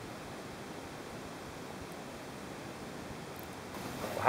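Faint steady hiss with no distinct sounds in it.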